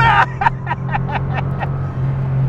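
The air-cooled 3.2-litre flat-six of a 1986 Porsche 911 Carrera running under way at steady revs, with an even low drone.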